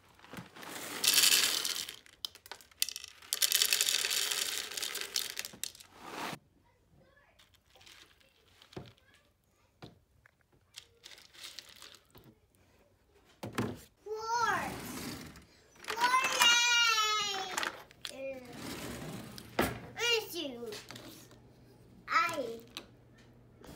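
Dry O-shaped cereal poured from its box into two plastic bowls: a short rattling pour about a second in, then a longer one of about three seconds. Later a small child's voice in high, sliding calls.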